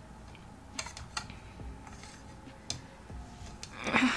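Three light clicks or taps from a glass-fronted picture frame being handled as its glass is pressed down, about a second apart at first and then once more near three seconds.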